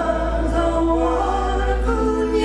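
Irish folk band playing live: several voices singing together in harmony over a held low bass note.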